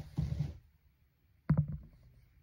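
Soft low thuds and rustling of someone moving about, then a sharper, louder knock about one and a half seconds in.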